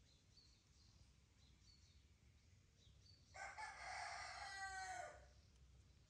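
A rooster crows once, about three seconds in, a call of just under two seconds that drops in pitch at the end. Faint small-bird chirps sound in the background.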